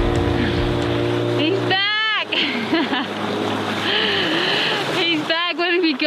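Background music ends about two seconds in. A man's excited shouts follow, twice, over the running of a small outboard motor and water noise from an inflatable dinghy coming alongside.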